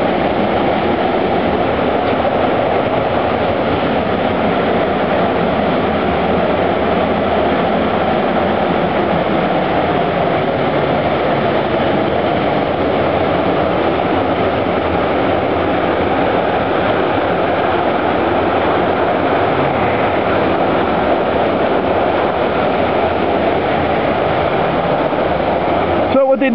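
A loud, steady rushing noise that holds one level throughout, with no pauses or changes in pitch.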